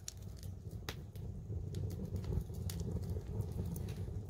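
Wood fire crackling, with scattered sharp irregular pops over a low steady rumble.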